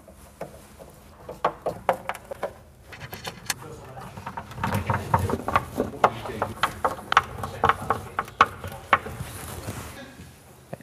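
A hand Phillips screwdriver driving screws through a steel runner carriage into the cabinet floor: a run of irregular clicks and scrapes that grows busier after the first second or so.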